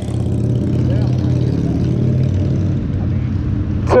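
A motor vehicle engine running close by in street traffic: a steady low rumble.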